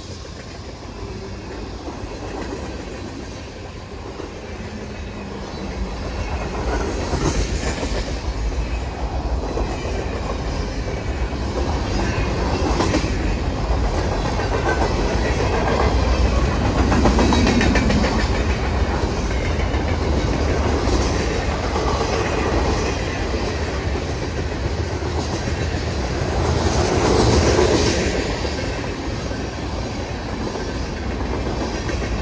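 Freight cars of a passing freight train rolling by close at hand: steady wheel-on-rail noise with a continual run of clicks, growing louder about six seconds in and swelling twice more in the second half.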